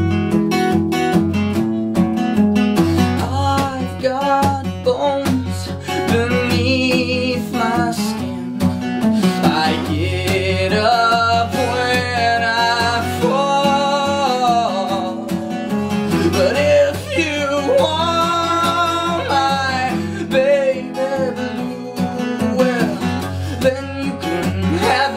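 Acoustic guitar strummed steadily, with a man's voice coming in a few seconds in and singing a melody over it.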